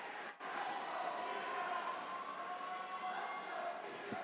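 Faint arena ambience during a robot match: a low, even crowd-and-machine background with faint wavering tones, no single event standing out.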